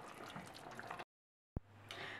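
Faint wet stirring of thick beef goulash in a stainless steel pot with a silicone spatula, cut off abruptly about a second in by silence, followed by a single click.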